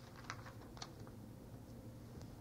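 Faint background of a cassette recording, a steady low hum with hiss, with a few faint light clicks in the first second, like handling of papers or objects in the room.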